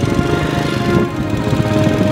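Small motorcycle engine running as the bike rides slowly up, its rapid uneven firing heard under background music.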